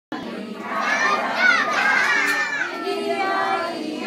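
Many young children's voices at once, chattering and calling out over each other.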